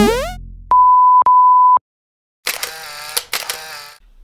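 Intro sound effects: a rising swoop fades out, then a steady high beep tone, like a censor bleep, sounds for about a second with a brief break partway. A short buzzy electronic effect follows near the end.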